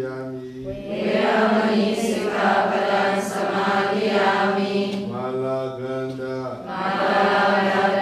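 Buddhist nuns chanting together on long, level notes, in drawn-out phrases with a short pause for breath about a second in and again near the end.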